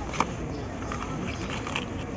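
Steady supermarket background noise, with one short plastic crinkle just after the start as a sealed pouch of mushrooms is taken off the shelf.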